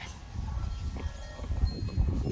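Outdoor ambience: a steady low rumble on the microphone with a few faint, thin ringing tones over it and a couple of soft ticks.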